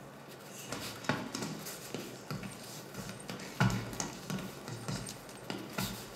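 Boxing-gym ambience: scattered thuds and slaps of gloves from sparring, the sharpest about a second in, again around three and a half seconds and near the end, over a low background murmur.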